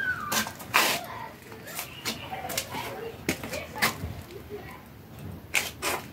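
Scattered sharp knocks and clanks from metal parts of a scrapped refrigeration unit being handled, the loudest about a second in.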